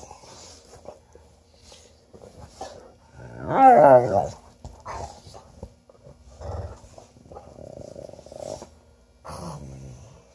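Two dogs play-growling as they wrestle, mouthing at each other: rough-play growls, not a real fight. One loud, wavering growl comes about three and a half seconds in, followed by shorter, quieter growls.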